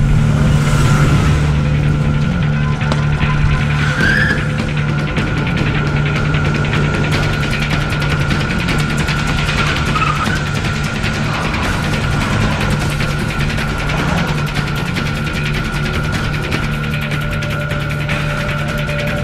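Car engine running hard with brief tyre squeals about four and ten seconds in, under a steady droning music score.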